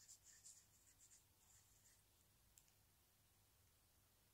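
Faint scratching of a pen writing on a dried bay leaf: a few short strokes in the first couple of seconds, then near silence.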